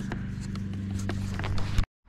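A steady low hum with scattered knocks and rattles from riding along a footpath. It cuts off suddenly near the end.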